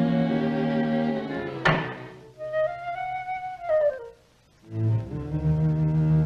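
Orchestral cartoon score: low strings hold notes, broken by a single sharp knock about a second and a half in. A high flute-like line then rises and falls, and after a short silence the low strings come back in near the end.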